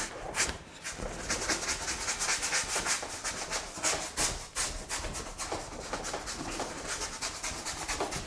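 Wide flat bristle brush scrubbing oil paint across a plywood panel in quick, repeated back-and-forth strokes, each stroke a short scratchy rasp.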